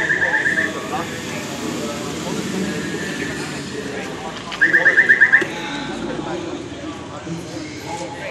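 Rapid electronic beeping at one high pitch, about ten beeps a second, in two bursts of under a second each, about four and a half seconds apart, over crowd chatter.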